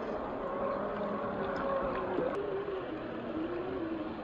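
Electric motor and geared drivetrain of a 1/10-scale RC crawler (Axial SCX10 II with a 540 35-turn brushed motor) whining as it drives through shallow water, the pitch wavering up and down with the throttle, over the wash of the water.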